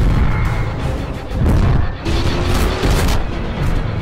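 Film soundtrack: dramatic music over deep, rumbling booms.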